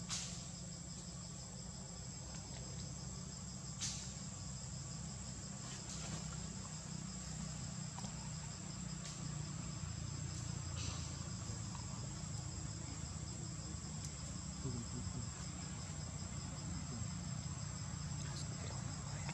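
Steady high-pitched insect chorus: one constant whine with a faster pulsing trill just below it, over a low rumble, with a few faint sharp clicks.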